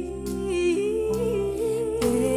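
A female singer holds a long wordless note with vibrato, stepping up in pitch about a third of the way in, over a live band's sustained backing in a Latin pop ballad.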